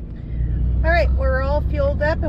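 Cummins turbo-diesel engine of a Dodge Ram 3500 pickup running steadily, heard as a low rumble inside the cab, with a woman talking over it from about a second in.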